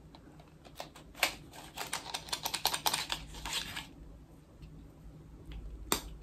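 A cream gel liner's cardboard packaging being handled and opened by hand: a quick run of light clicks and crinkles for about three seconds, then one sharp click near the end.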